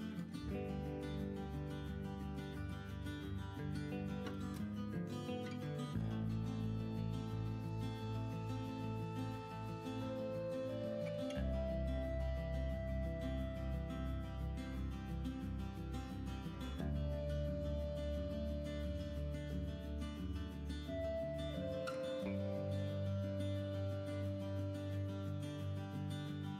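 Quiet instrumental background music with guitar, its chord changing about every five or six seconds.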